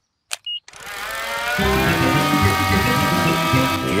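A few clicks and a short beep, then a small toy model aeroplane's propeller engine starts up with a buzz that swells and settles to a steady whine. Background music joins about a second and a half in.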